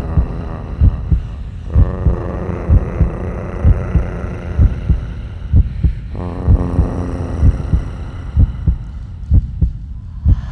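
Dance music in a club/house style: a deep, heavy kick drum beating a steady pattern under held synth chords that change about two seconds in and again about six seconds in.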